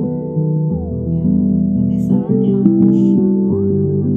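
Instrumental background music: sustained keyboard chords with a plucked-string part, the chords changing every second or so.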